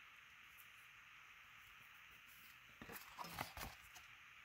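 Near silence with faint room hiss, then a few soft rustles and taps of card stock being handled about three seconds in.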